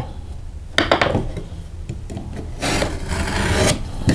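Pencil drawing a line along an aluminium speed square on the paper face of a drywall scrap: a few light taps about a second in, then a scratchy rub lasting about a second near the end.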